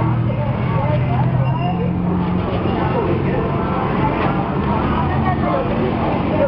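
Street ambience: voices talking over the steady running of a vehicle engine.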